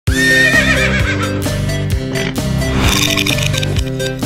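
A horse whinnying once, a quavering call in the first second, over music with a steady beat.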